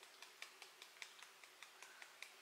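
Fingertips tapping on the side of the other hand: faint, light taps at an even pace of about five a second.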